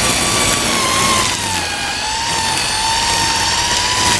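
String trimmer (weed eater) running steadily at speed, a loud whine that wavers slightly in pitch, dipping a little midway and rising again.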